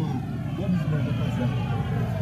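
Steady low rumble of a vehicle driving along a street, with voices talking over it.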